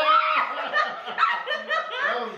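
A man and a woman laughing together, in quick repeated pulses.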